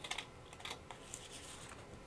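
Scissors snipping through paper: a few short, crisp snips, the loudest right at the start.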